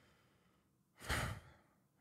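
A man sighs once into a close microphone, a breathy exhale of about half a second that comes about a second in.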